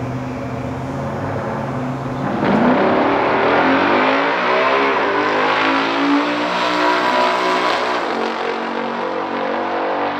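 A 1969 Chevrolet Corvette L88 427 V8 and a 1967 Dodge Coronet R/T 426 Hemi V8 idle at the starting line, then launch about two seconds in. Both engines rev up hard and rise in pitch as the cars pull away down the drag strip.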